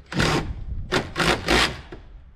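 Four short, harsh scraping strokes from a hand tool working at the wooden door jamb: one just after the start, then three in quick succession about a second in.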